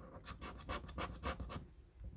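A clear plastic scraper rubbing the coating off a scratch card in quick back-and-forth strokes, about six a second, easing off near the end.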